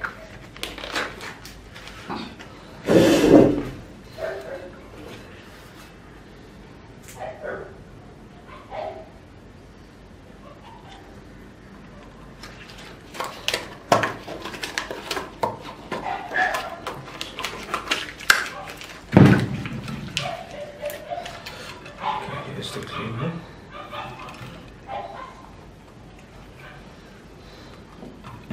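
Nitrile gloves being pulled on, rustling and snapping, then handfuls of wet clay handled and pressed onto a slab, with scattered clicks and knocks. Two louder bursts stand out, about three seconds in and again past the middle.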